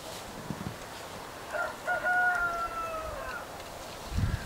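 A pitched animal call about a second and a half in: a couple of short notes, then one long held note that falls away at the end.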